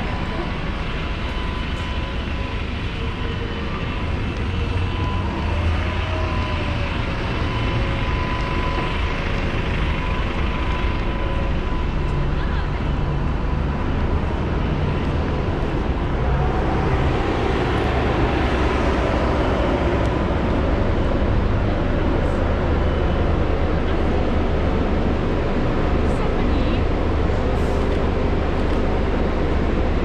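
Busy city street traffic: a steady low rumble of engines and tyres, with a red double-decker bus pulling past close by and swelling louder about seventeen seconds in.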